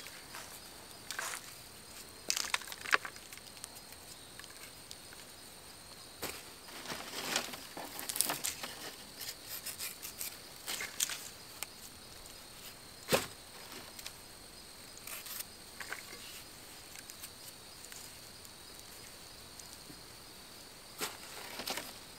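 Scattered snips, clicks and rustles of carrots and their leafy tops being trimmed by hand and tossed into a basket, with one sharper click about 13 seconds in, over a faint steady high-pitched whine.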